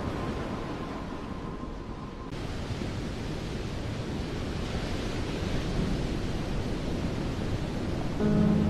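A steady rushing wash of noise, like surf or wind, with no melody or beat. A faint held tone under it stops about two seconds in.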